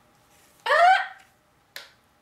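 A short, high exclamation "Ah!" in a person's voice, rising in pitch, followed about a second later by a brief puff of breathy noise.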